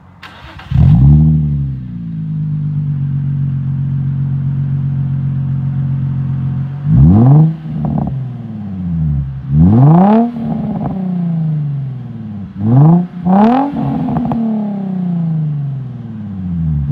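Nissan 350Z's 3.5-litre V6 starting through an Invidia N1 exhaust on the stock Y-pipe. It cranks briefly and catches with a rising flare about a second in, then settles to a steady idle. It is then revved in about five quick throttle blips, each rising sharply and falling back to idle, two of them in quick pairs.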